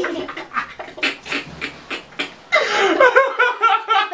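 Two young boys laughing hard, at first in short breathy, wheezing gasps a few times a second, then breaking into loud high-pitched laughter about two and a half seconds in.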